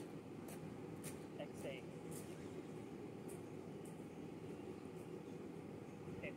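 Steady low background rumble of an open-air setting, with a couple of faint short chirps about one and a half seconds in and a few faint high ticks scattered through.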